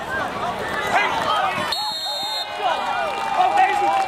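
Football crowd in the stands: many voices shouting and cheering at once, with a long drawn-out yell near the end. A brief high-pitched steady tone sounds just under halfway through.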